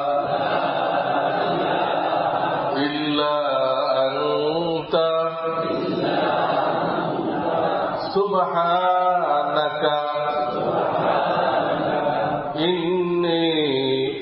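A man chanting in long, drawn-out melodic phrases, his voice holding and gliding on each note, in the style of a religious recitation.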